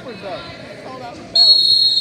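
One long, steady whistle blast, most likely a referee's whistle, starting abruptly a little over a second in and holding at one pitch. Voices can be heard before it.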